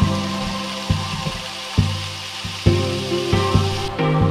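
Instrumental background music, with pitched notes struck about once a second and held between strikes.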